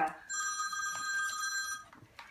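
Phone ringtone for an incoming call: a steady chord of high tones that sounds for about a second and a half, then cuts off.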